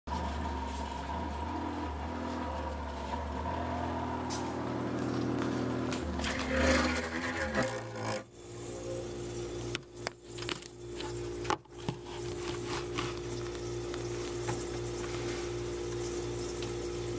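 Small freezer fan in a Sub-Zero 590 refrigerator running with a steady hum of several tones: the noise the owner says the whole house hears. The hum's tones change about halfway through, and a few sharp knocks of handling come around the middle.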